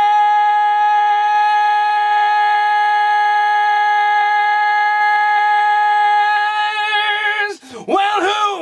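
A male rock vocalist holding one long, loud high note on his own, with no accompaniment, close-miked in a studio vocal booth. The note stays steady for about seven seconds, gains a vibrato near the end, then cuts off, and he starts singing again right after.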